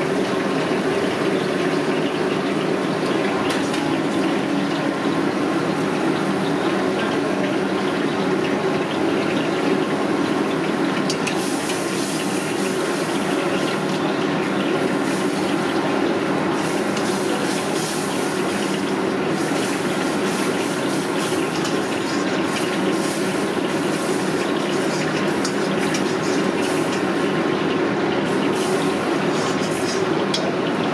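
Wok frying over a high-flame gas burner: a steady roar with oil sizzling. From about eleven seconds in, the sizzle turns sharper and crackles as the red curry sauce cooks in the hot oil.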